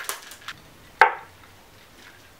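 Metal cocktail shaker being handled: a couple of light clicks, then one sharp metallic knock with a brief ring about a second in.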